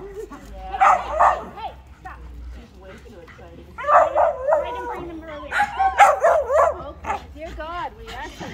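Small dog barking and yipping excitedly in short bursts: a few yips about a second in, then longer runs of barks around four seconds and again around six seconds.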